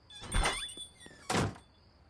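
Two short noisy bursts about a second apart, over a faint steady high whine: cartoon sound effects.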